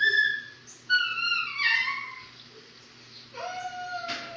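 A dog whining in high, pitched cries: one ends just after the start, and another about a second in falls in pitch. Near the end a lower, longer, drawn-out whine begins.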